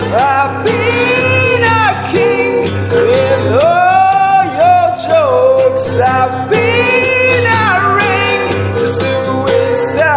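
Live song: a singer holding long, sliding notes over guitar accompaniment.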